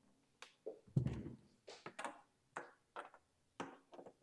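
Handling noise from a Tribit portable speaker being turned around and set on the table, with a thunk about a second in, followed by a run of light clicks and taps as a cable jack and adapter are pushed into its rear input socket.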